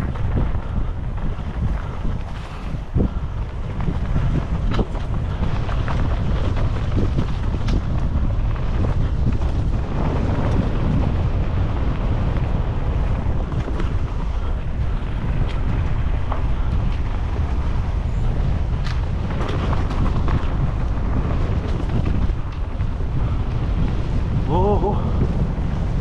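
Wind rumbling steadily on a helmet-mounted camera's microphone while a mountain bike rides down a dirt forest trail, with scattered clicks and knocks from the bike rattling over bumps.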